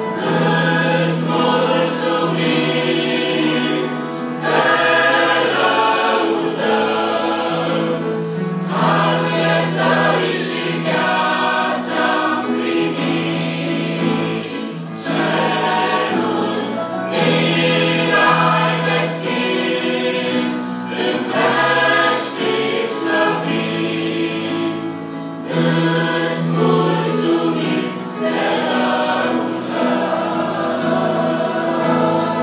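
Mixed church choir of men and women singing a hymn in parts, with long held notes in phrases separated by brief breaks.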